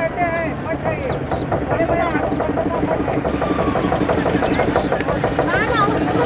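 A motorboat's engine running steadily under way on a river, with people's voices talking over it.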